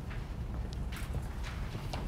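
Footsteps of a person walking across a room, a few separate steps, over a steady low room hum.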